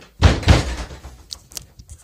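A house door being shut: two loud bangs close together about a quarter second in, followed by a few light clicks.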